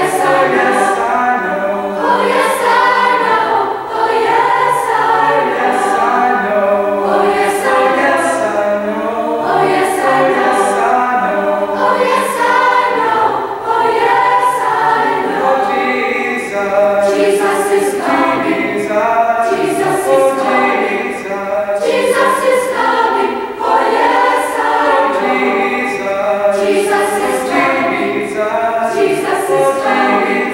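Youth choir of boys and girls singing a spiritual in harmony, loud and steady, with crisp consonants.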